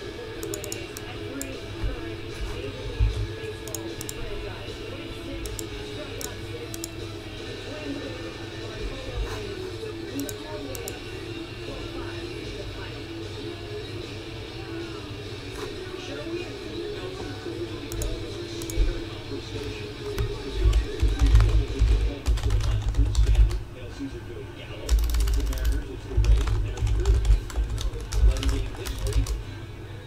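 Computer keyboard typing in scattered bursts of key clicks over steady background music. Dull low thumps join in from about two-thirds of the way through.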